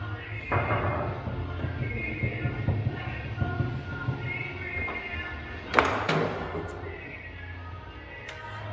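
Background music with a steady beat, over the knocks of a table-football game: a sharp knock about half a second in, and a loud sharp clack of the ball about six seconds in, the loudest sound.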